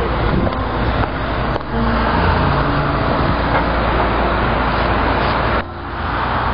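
Steady city street traffic noise: a continuous din of cars and other vehicles with shifting low engine tones. It dips briefly near the end.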